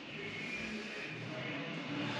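Faint, steady background noise inside the trailer, with a few faint low tones and no distinct event.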